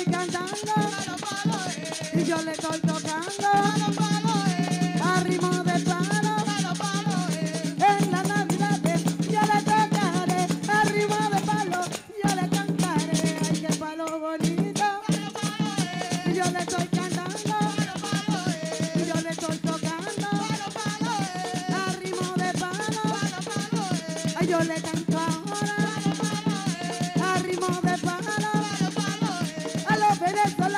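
Live Afro-Dominican palo music: drums and hand-held tambourines keep a fast, driving rhythm under women singing a melody. The music drops out briefly about twelve seconds in, then resumes.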